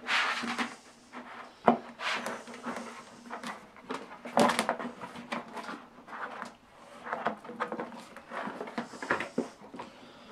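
A large flexible translucent plastic sheet being bent and handled against an aluminium tube frame: irregular rustling and scraping with knocks, the sharpest about one and a half seconds in.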